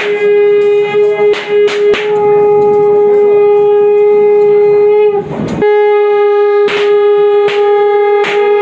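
A reed wind instrument, shehnai-like, holds one long steady note, breaking briefly a little after five seconds. Sharp drum strikes fall at uneven intervals over it.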